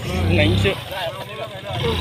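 Hero Pleasure scooter's small single-cylinder engine revving in a burst that dies away under a second in, with voices talking over it.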